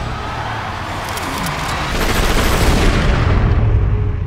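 Dense battle noise of gunfire and low booms over a heavy rumble, swelling louder in the second half.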